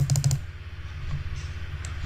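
A quick run of about six sharp computer clicks in the first half-second, as the font size is stepped up, then a low steady hum with one more faint click near the end.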